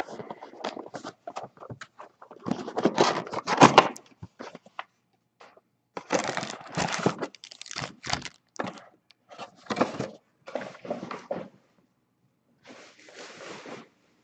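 Cardboard trading-card hobby box being opened and a stack of foil-wrapped card packs lifted out and set down, the packs crinkling and rustling in several bursts.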